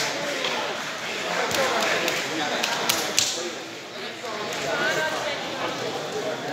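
Indistinct voices of onlookers talking and calling out in a sports hall, with a few sharp clicks at about one and a half and three seconds in.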